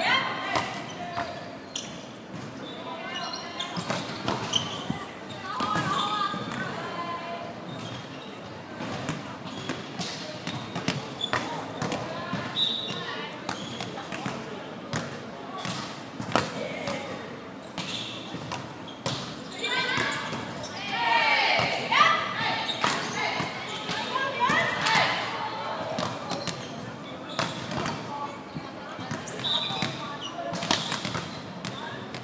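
Volleyballs being struck and bouncing on a wooden sports-hall floor, many separate impacts echoing in the large hall, with players' shouted calls in between.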